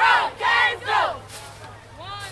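A group of band members shouting in unison: three short yells about half a second apart, each rising and falling in pitch.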